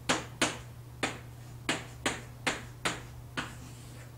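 Chalk striking a blackboard as characters are written: about eight sharp, short taps at uneven intervals, over a steady low hum.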